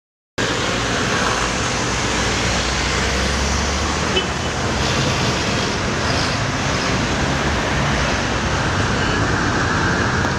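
Steady, loud rushing noise like road traffic, with a low rumble, cutting in suddenly out of silence about half a second in.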